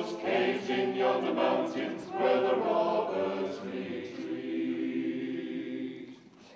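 Mixed choir of men's and women's voices singing unaccompanied in harmony, growing quieter toward the end.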